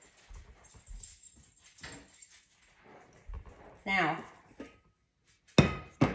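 A puppy whimpering faintly in the first few seconds. Near the end comes a loud metallic clunk as the stainless steel stand-mixer bowl is lifted off the mixer.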